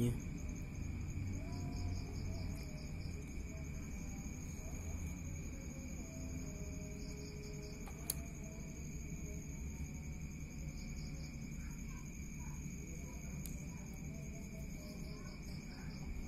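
Crickets chirping in short pulsed bursts every few seconds over a steady high-pitched ringing and a low hum, with a couple of faint sharp clicks.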